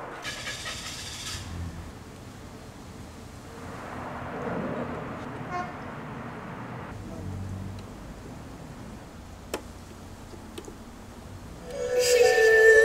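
Faint handling noises of car-audio installation work: a carpeted subwoofer box shifted in the truck cab and a screwdriver working wires into amplifier terminals, with irregular scraping and a single sharp click about nine and a half seconds in.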